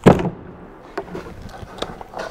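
A sharp plastic pop as the taillight lens's ball studs are pulled out of their plastic sockets, followed by a few light clicks and rustling as the lens comes free of the car body.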